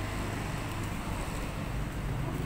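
Steady street traffic noise: a low engine rumble with road hiss from passing vehicles.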